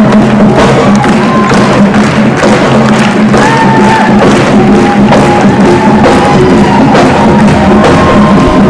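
Marching band playing loudly, snare, tenor and bass drums keeping a steady beat under a brass melody of held notes, with an audience clapping along.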